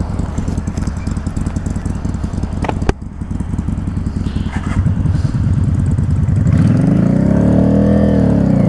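Yamaha Drag Star 650's 649cc V-twin idling steadily, with a single sharp click about three seconds in. Over the last few seconds a second engine grows louder and rises in pitch, then begins to fall away.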